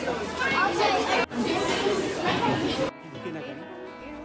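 Several voices chattering over one another over background music; the sound drops abruptly to a quieter background about three seconds in.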